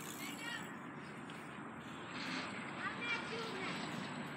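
Faint, distant voices calling out a few times over a low, steady outdoor background hiss.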